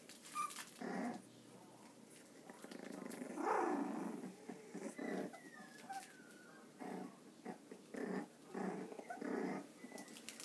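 A litter of three-week-old Jack Russell terrier puppies play-growling as they wrestle, in short bursts, the longest and loudest a little past three seconds in. A thin high whine slides downward about five seconds in.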